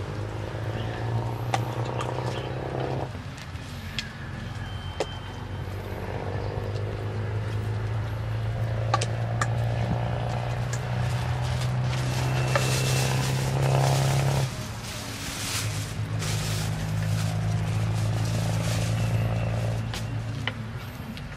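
A metal spoon clinking and scraping against a stainless steel bowl while a leafy salad is tossed and spooned out, with brisker scraping about twelve to fourteen seconds in. Under it runs a steady low engine-like hum that shifts abruptly twice.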